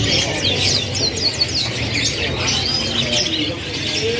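Many caged domestic canaries chirping and singing at once, quick high notes with a fast run of falling notes about half a second to a second and a half in, over a steady low hum.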